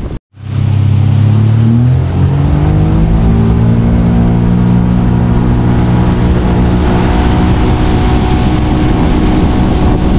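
Sea-Doo Switch pontoon boat's engine accelerating hard at full throttle in sport mode. Its pitch climbs over about three seconds, then holds high and steady with wind and water rush.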